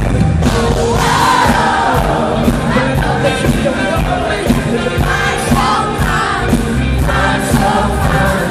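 Live pop band playing loudly with a male lead singer and a steady drum beat of about two hits a second.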